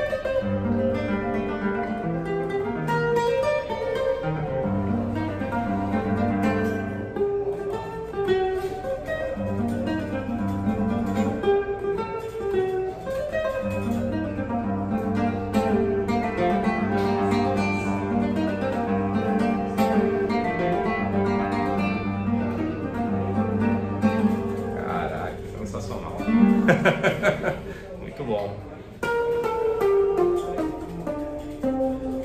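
Yamaha nylon-string classical guitar played fingerstyle, a flowing melody over a repeating bass line, with its built-in reverb sounding from the guitar's own body. Near the end comes a burst of loud, quick strums.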